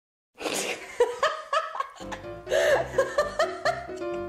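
A person laughing in a quick, rhythmic ha-ha-ha, about four a second. About two seconds in, background music with a steady bass line comes in, and the laughing goes on over it.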